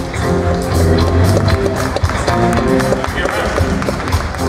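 A live band plays walk-on music with a steady beat: drums, bass and electric guitar.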